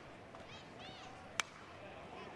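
Faint ballpark crowd murmur, then, about a second and a half in, a single sharp crack of a college metal bat striking a pitched ball, which is popped up foul.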